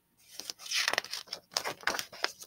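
A picture book's page being turned by hand: paper rustling and flapping, with several sharp crackles.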